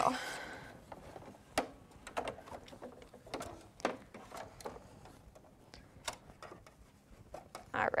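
Faint, irregular clicks and soft knocks from handling fabric and the hoop at a computerised embroidery machine, with no steady stitching rhythm.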